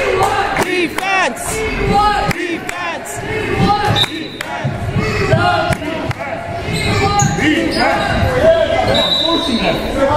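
A basketball bouncing on a hardwood gym floor, echoing in a large hall, with people's voices calling over it.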